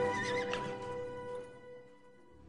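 A horse whinnies once, briefly, at the start over sustained background music, and the music then fades out.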